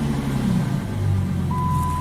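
Dodge Charger 2.7 V6 engine dropping back from a rev to idle as the throttle is released. About a second and a half in, a steady warning chime sounds from the dash as the oil pressure warning light comes back on at idle.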